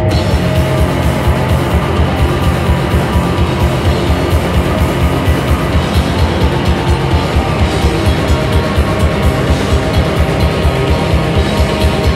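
A rock band playing live: electric guitar and drum kit, loud and dense, over a fast, even pulse of drum hits. The full band comes in at the very start.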